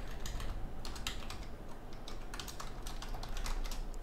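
Typing on a computer keyboard: a run of quick keystroke clicks with short pauses.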